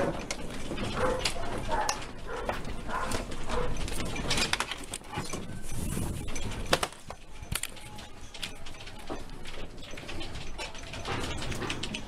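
A house shaking in a major earthquake: many sharp rattles and knocks from loose objects and the structure, over a steady low rumble.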